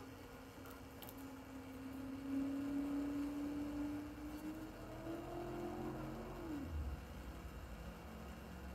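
A faint, steady engine hum that slowly rises in pitch for about six seconds, then glides up and stops, with a low rumble following near the end.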